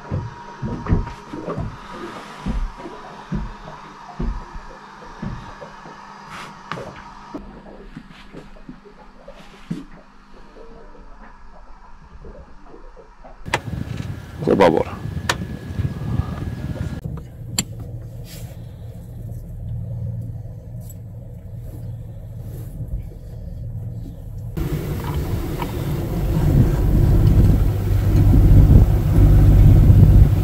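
Scattered clicks and knocks, then a steady low rumble from the twin Oceanvolt electric drive motors and propeller running under heavy power, about 43 kW each at 990 rpm. The rumble swells louder near the end.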